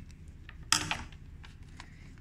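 Handling noise as a small fabric square and a paper pattern sheet are picked up: one sharp, brief rustle about two-thirds of a second in, then a few faint light ticks.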